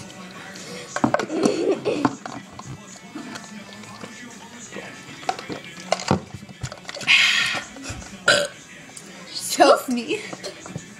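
A girl burps, a drawn-out belch about a second in, after drinking from her cup. A short laugh follows near the end.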